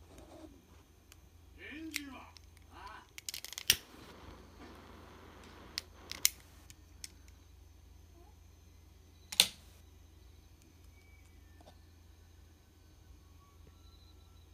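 MDF painting board being handled: a few sharp knocks and clicks as it is tilted and set down on the cups that hold it up, the loudest about four and nine seconds in. A short murmuring voice comes about two seconds in.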